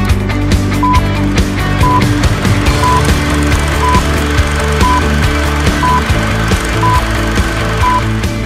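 Countdown beeps over background music: a short beep, the same pitch each time, once a second, marking each number of the countdown.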